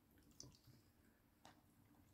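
Faint chewing of a red fox eating a small piece of meat taken from the hand: a few soft clicks, about half a second in and again about a second later, over near silence.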